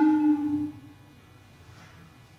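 Contemporary chamber ensemble of recorder, panpipes, viola and accordion holding several sustained notes together, a low wavering one beneath higher ones. The chord stops about three quarters of a second in, leaving only faint room noise.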